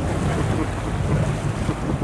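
Fishing boat's engine running with a steady low rumble, mixed with wind buffeting the microphone and the sea washing past the hull.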